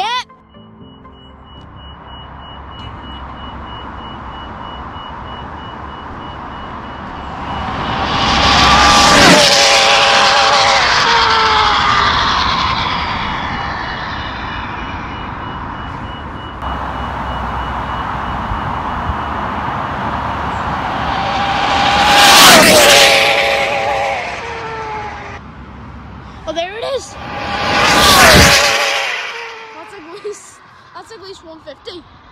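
Electric RC speed-run car on a high-speed pass: a whine builds, peaks about nine seconds in, and drops in pitch as it goes away. This is the run later logged at 153 mph. Two more loud vehicle passes come around 22 and 28 seconds in.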